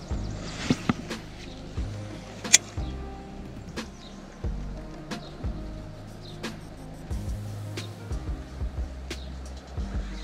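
Background music with held low notes that change every second or two, over a few sharp clicks and knocks, the loudest about two and a half seconds in.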